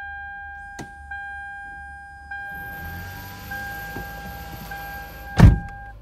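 2009 Toyota Camry Hybrid's dashboard warning chime sounding as a steady tone, re-struck about every second, as the car starts with its hybrid-system warning lights on: the kind of fault that most likely means the hybrid battery is not charging correctly. A hiss joins about two seconds in, and a loud thump comes near the end, just before the chime stops.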